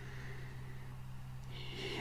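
A quiet pause in a man's talk: a steady low electrical hum with faint hiss, and near the end a soft intake of breath before he speaks again.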